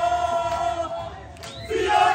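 A crowd of rugby supporters chanting together, many voices holding one long note that fades about a second in and dips briefly before the next loud call starts up near the end.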